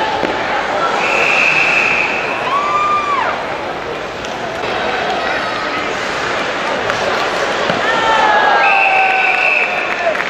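Ice hockey arena sound during live play: crowd chatter with individual shouts, and knocks of sticks and puck on the ice. Two steady high tones of about a second each sound about a second in and again near the end.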